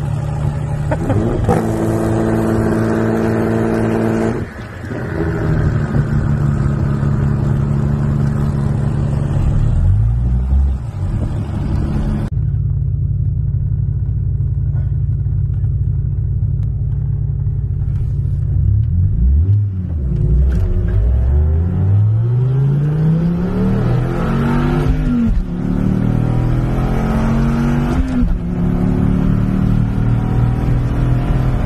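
Car engines running steadily with a low drone, then a car accelerating hard, its engine pitch rising in several sweeps through gear changes.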